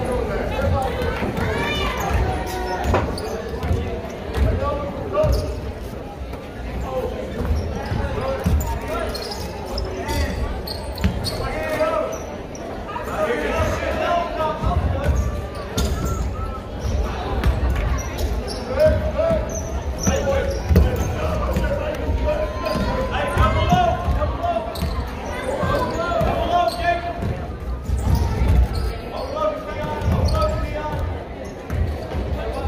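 Basketball game in a gymnasium: a ball bouncing on the hardwood court in repeated sharp knocks, with spectators' voices and shouts echoing through the hall.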